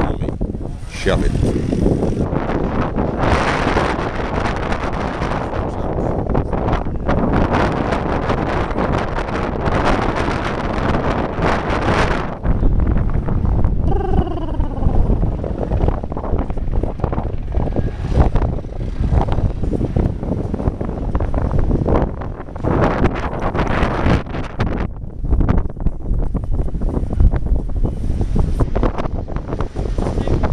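Storm wind buffeting a phone's microphone in gusts, with rain.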